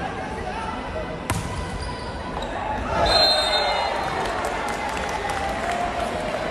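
A volleyball struck once with a sharp smack about a second in, likely the serve. It comes over a steady babble of crowd and player voices that swells louder about three seconds in.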